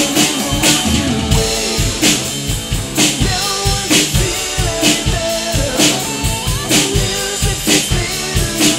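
A drum kit played live along to a rock song with male singing and guitar. The drums keep a steady rock beat, with kick and snare hits about twice a second and cymbals ringing over them.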